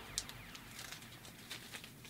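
Faint crinkling of a thin clear plastic sleeve being handled, with a couple of soft ticks.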